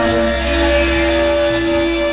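Experimental electronic synthesizer music: steady held drone tones, with a deep bass note that comes in at the start and briefly drops out, and thin high sweeps gliding up and down above.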